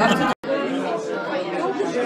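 Background chatter of several people talking at once, indistinct, broken by a brief moment of silence about a third of a second in.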